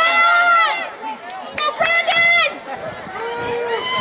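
Spectators yelling for runners in a sprint race: two long, high-pitched shouts in the first half, then a lower drawn-out call near the end.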